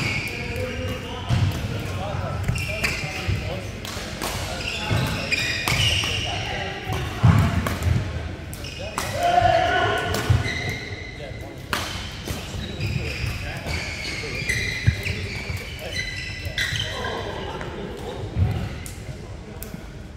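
Badminton being played: sharp racket hits on the shuttlecock, shoes squeaking on the court mat, and thudding footfalls from players moving about the court.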